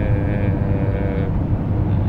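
Steady low rumble inside a vehicle cabin, the engine and road noise of a car or van. Over it, a held hesitation vowel ("eee") trails off about a second in.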